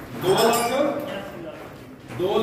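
A man's voice calling out briefly, with a light clinking.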